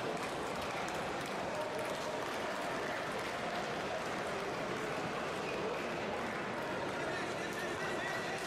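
Crowd murmur in a large hall: many voices talking at once, steady, with no single voice standing out.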